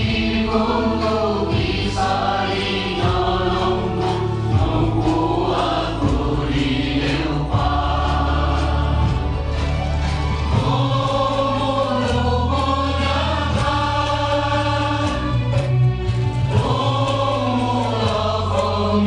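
An anthem sung by a choir with instrumental accompaniment, in slow phrases of long held notes over a steady low backing.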